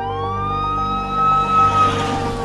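Emergency vehicle siren wailing: one rise in pitch that then holds, sagging slightly near the end.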